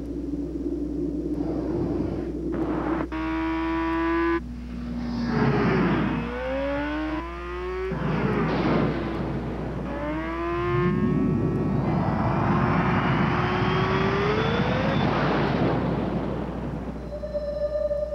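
Sport motorcycle engine accelerating hard: a held high rev about three seconds in, then the pitch climbs in several rising runs that break off and start again lower as it shifts up through the gears.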